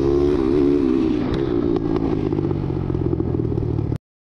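Honda Monkey mini bike with a 140 cc YX single-cylinder engine running, its pitch wavering slightly up and down, with a couple of faint clicks. The sound cuts off abruptly at the end.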